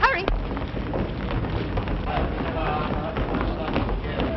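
A short high vocal exclamation at the start, then indistinct voices over a constant hiss.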